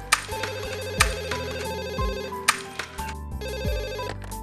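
A mobile phone ringing: a fast, repeating electronic ringtone trill in two stretches, over background music with a steady beat.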